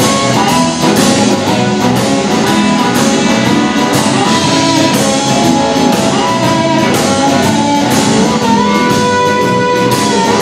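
Live blues band playing: amplified harmonica cupped to a microphone, with electric guitars, bass guitar and a drum kit keeping a steady beat.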